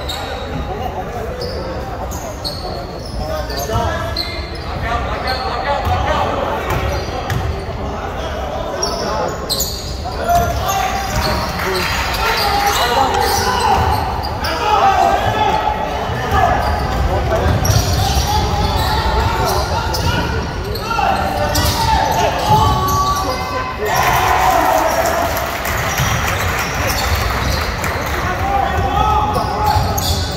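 A basketball dribbled on a wooden gym floor, its bounces echoing in a large gym, with players and spectators calling and shouting throughout.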